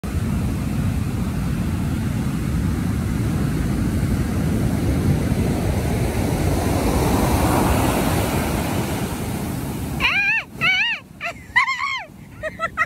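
Surf breaking on a beach: a steady rush of waves that swells about seven seconds in. About ten seconds in the rush cuts off and a high voice calls out a few times, each call rising and falling.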